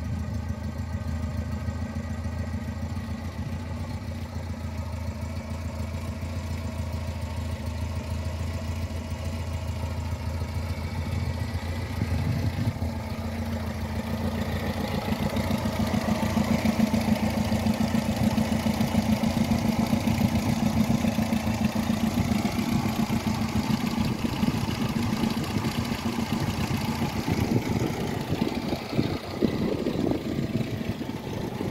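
The twin-cam inline-four of a 1966 Alfa Romeo Duetto 1600 Spider idling steadily. It is louder and fuller through the middle stretch, heard close over the open engine bay.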